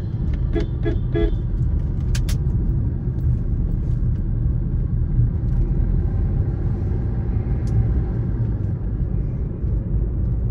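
Steady low rumble of a car's engine and tyres heard from inside the cabin while driving on a paved road. About half a second in come three short pitched toots in quick succession, and a couple of sharp clicks follow just after two seconds.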